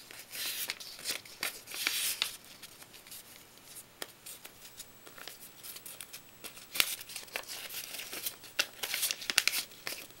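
Paper strips rustling and crinkling as they are handled and bent in the hands, in bursts near the start and end, with a few sharp clicks in between.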